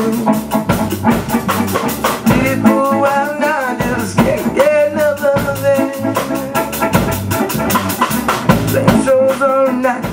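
Small live rock band playing an original song: electric guitar, electric bass and drum kit, with a steady drum beat.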